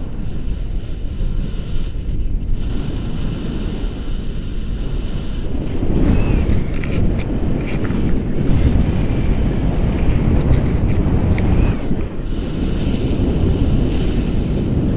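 Wind rushing over a handheld camera's microphone in tandem paraglider flight, a steady low rumble that grows louder about six seconds in.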